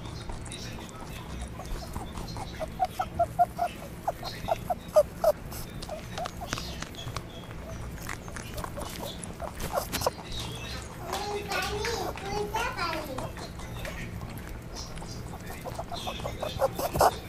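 Rabbits chewing grass, heard as faint, scattered crisp clicks, with a voice in the background: a quick run of short sounds about three seconds in and a longer rising-and-falling stretch about eleven seconds in.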